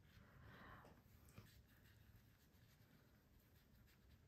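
Near silence, with the faint brushing of a paintbrush spreading wet watercolor paint across textured watercolor paper.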